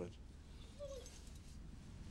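A dog gives one short, faint whine about a second in, over a quiet hush.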